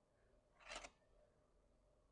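Near silence broken by one brief, faint scratch about three quarters of a second in: a pencil stroke drawn along a plastic set square on paper.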